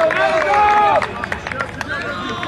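Several people shouting across a playing field, one voice holding a long drawn-out call through the first second before it breaks off, with shorter calls and a few sharp claps after it.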